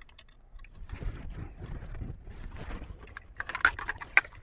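Light clicks and small knocks from a stereo microscope and its small parts being handled on a silicone work mat, with a denser burst of clicks near the end.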